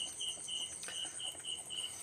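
Cricket chirping in short, evenly spaced high chirps, about three a second, over a faint steady high hiss.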